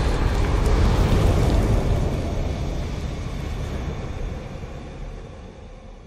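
Deep rumbling sound-effect tail of a logo-intro sting, following an explosive hit and fading away steadily over several seconds.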